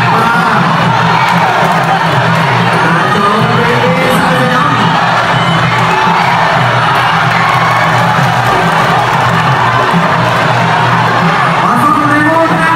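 Arena crowd cheering and shouting over ringside fight music, loud and continuous.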